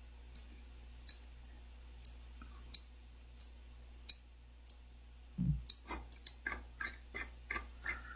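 Computer mouse clicking while a file is scrolled: single sharp clicks about every 0.7 seconds, then a faster run of clicks from about five and a half seconds in, over a faint steady low hum.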